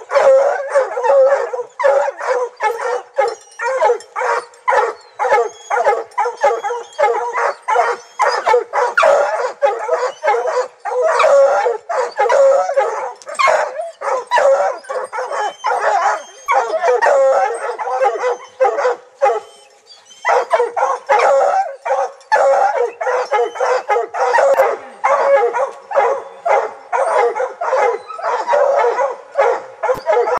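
Several hounds barking and howling without let-up at a bear they have treed, calls overlapping at a few a second, with one short lull about twenty seconds in.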